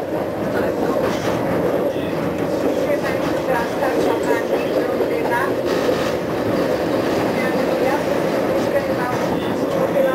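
Steady rumble of a two-car 1984 Konstal 105Na tram set running along the track, heard from inside the car: wheels on rail and the motors and gearing underneath.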